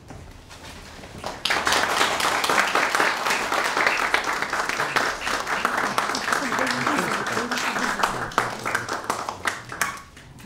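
Audience applauding, starting about a second and a half in and dying down at the end.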